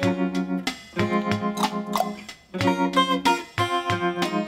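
Solo hollow-body guitar playing a song's instrumental intro: repeated picked chords in short phrases of about a second each, with brief gaps between them.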